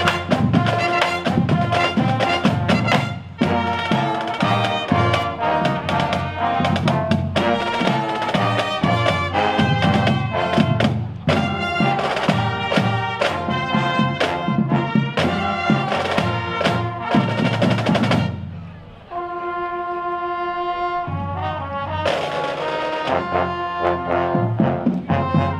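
Drum and bugle corps playing: brass horns over marching snare and bass drums. About eighteen seconds in the drumming drops away under a held brass chord for a couple of seconds, then the full corps comes back in.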